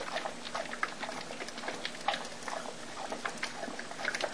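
Dog lapping water from a bowl: a run of small, wet, irregular clicks and slurps.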